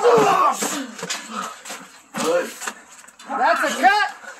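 Raised voices shouting and grunting without clear words, in several loud bursts, the last one near the end rising in pitch.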